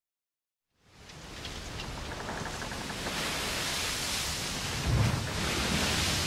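A steady rushing noise fades in about a second in, with a low thump about five seconds in.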